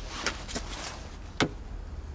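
Light rustling over a steady low rumble, with one sharp tap about one and a half seconds in as the probe of a handheld paint thickness gauge is set against a car body panel.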